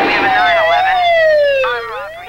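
Police car siren wailing: one pitched tone that falls slowly in pitch through most of the stretch and starts to rise again near the end.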